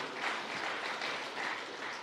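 Audience applauding, a steady even clapping from a large seated crowd.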